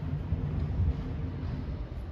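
Low rumble of a motor vehicle engine in street traffic, swelling in the first second and easing off near the end.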